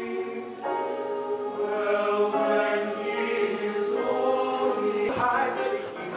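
Large mixed choir of teenage voices singing long held chords. The chord changes about half a second in and again about five seconds in.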